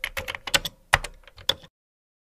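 Typing sound effect: a quick run of irregular key clicks, stopping shortly before the end.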